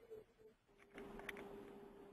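Near silence on a phone-line audio feed, with a faint steady hum that comes in about half a second in.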